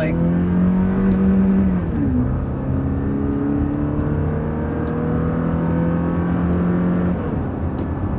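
Toyota Tacoma's four-cylinder engine accelerating hard from a stop with the automatic shifted manually, heard from inside the cab. The engine note steps down as it shifts up about two seconds in, climbs steadily through the next gear, then drops again near the end.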